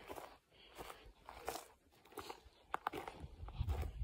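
Quiet footsteps crunching through dry grass and brush in an uneven rhythm, with a couple of sharper snaps a little under three seconds in.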